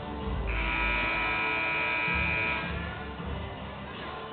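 Arena scoreboard horn giving one steady, buzzy blast of about two seconds, marking the start of the second half, over background music from the PA.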